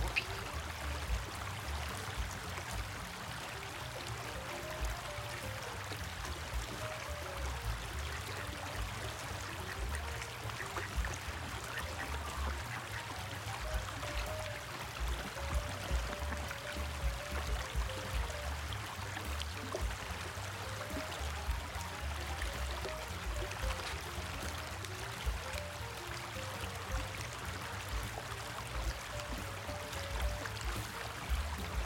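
Small creek running steadily over stones, with soft background music playing over the water.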